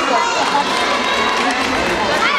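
Crowd of spectators talking and calling out, many voices overlapping.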